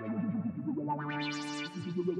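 Sampled vintage analog synthesizer preset playing sustained notes through a resonant low-pass filter swept up and down by an envelope and wobbled by an LFO. The pitch steps to new notes a few times, and the tone opens out brightly about a second in before closing again.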